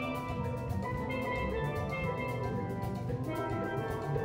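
Steel band playing: steel pans struck with mallets ring out many overlapping pitched notes over a drum kit keeping a steady beat.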